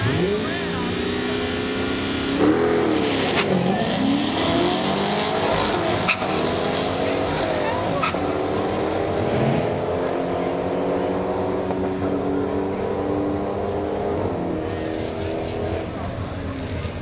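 2010 Camaro SS's 6.2-litre V8, breathing through prototype long-tube headers and exhaust, at full throttle on a quarter-mile drag run. The revs climb from the launch and drop at each upshift, a few times in all, then the engine fades as the car pulls away down the strip.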